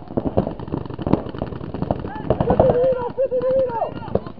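Rapid, repeated shots from paintball markers, in quick irregular strings. Players' voices are heard over them, with one long drawn-out call in the second half.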